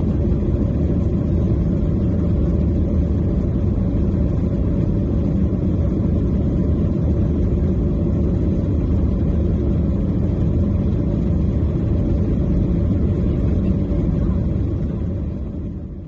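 Steady low rumble of a jet airliner's engines and airflow heard inside the passenger cabin as it climbs after takeoff, fading out near the end.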